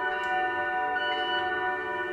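Tibetan singing bowls ringing in long, overlapping sustained tones with a slow waver in the lower notes, blended with ambient electric guitar drones. A new high ringing tone enters about a second in.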